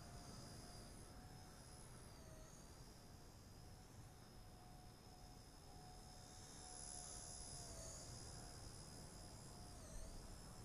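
Faint, steady high-pitched whine of a Blade Nano S2 micro RC helicopter's motors and rotors in flight, its pitch dipping briefly about two seconds in and again around eight seconds as the throttle varies.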